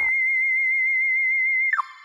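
A single high synthesizer lead note with a fast vibrato, held alone without beat or voice. About three-quarters of the way in it cuts off with a brief crackle, and a lower chord fades out as the track ends.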